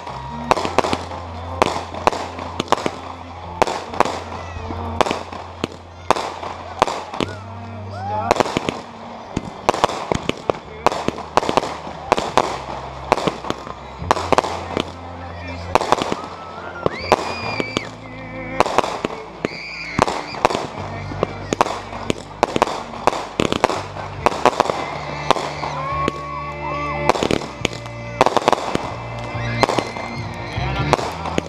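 Consumer aerial fireworks cake firing: a fast, continuous run of sharp bangs and crackling bursts, several each second, as shots launch and break overhead.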